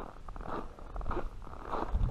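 Footsteps crunching in snow at a walking pace, about three steps over two seconds, over a low rumble on the microphone.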